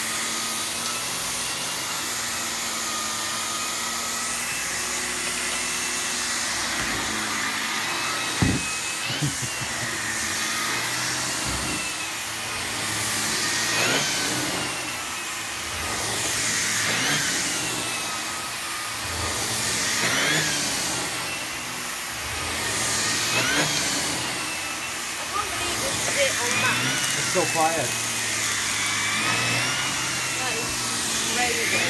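Miele C3 Complete canister vacuum running with its air-driven turbo brush head being pushed back and forth over carpet; its whine rises and dips in pitch every few seconds. A single knock about eight seconds in.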